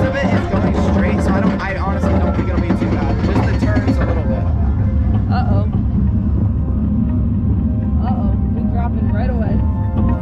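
Steady low rumble of wind and a roller coaster train running on its track, with music and voices over it; the voices thin out about four seconds in.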